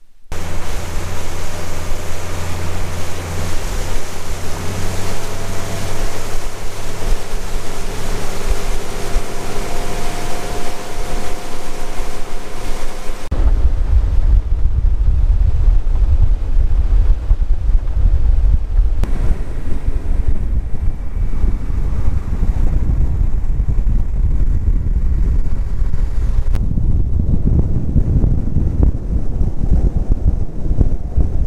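A boat under way: the Honda 150 four-stroke outboard running at speed over water rushing past the hull, with a faint engine tone that rises slightly around ten seconds in. From about thirteen seconds on, heavy wind buffeting on the microphone drowns out most of it, with abrupt changes where the footage is cut.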